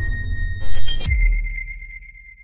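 Electronic logo-sting sound design: a short swell about halfway through cuts off into a deep low boom, leaving a single high ringing tone that fades away.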